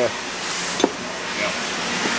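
Sunnen honing machine running, its mandrel turning in the kingpin bushing of a Datsun truck spindle under a spray of honing oil. It makes a steady mechanical hiss, with a single sharp click a little under a second in.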